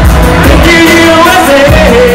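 Live band playing a pop-rock song through a PA with a singer singing held, gliding notes; very loud, close to the limit of the recording.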